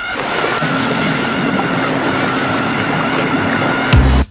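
A steady rushing noise with a faint steady hum underneath. Music with a strong beat cuts in right at the end.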